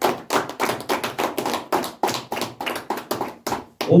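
Hands clapping in a quick, steady rhythm, several claps a second, stopping just before the end.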